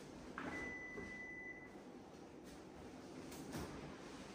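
A click, then a single steady electronic beep lasting a little over a second, from the Panasonic EP-MA103 massage chair's controls. A short soft knock follows near the end.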